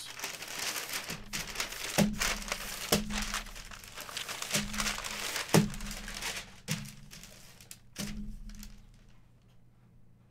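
Brown kraft packing paper crinkling and rustling as it is handled and pushed aside in an opened box, with a few sharper crackles and soft knocks; the rustling dies down near the end.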